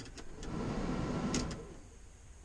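Iveco Tector cab heater blower fan running, working again after the repair. The airflow rises, holds and then falls away as its control on the dashboard is turned.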